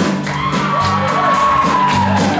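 Live band playing with drums, guitars and several singers; a long high note is held for most of the moment and falls away near the end.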